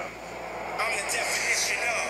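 Movie trailer soundtrack played back, with a voice and a rushing noise that comes in just under a second in.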